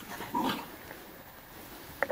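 One short animal sound from the horse about half a second in, made while it noses at the ground.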